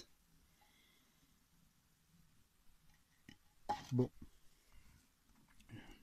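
Near quiet room tone with a few faint, short clicks, broken once by a single spoken word.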